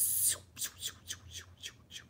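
A random raffle-picker web page's drawing sound effect playing through a laptop's speakers: a brief noisy burst, then a quick, even run of short, falling chirps, about five a second.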